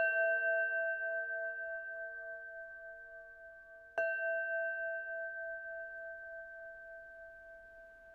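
A singing bowl struck twice, about four seconds apart. Each strike rings on in a few steady tones that waver gently and fade slowly.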